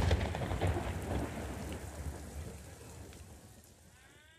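Thunder rumbling over a steady hiss of rain, starting suddenly and fading away over a few seconds.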